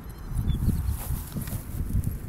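Wind rumbling on a phone microphone, with faint scattered rustling and ticks in the grass about a second in.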